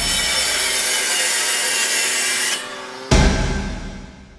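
Intro-style sound design: a sustained hissing, grinding sound effect that fades out about two and a half seconds in, then a sudden deep impact hit about three seconds in that dies away.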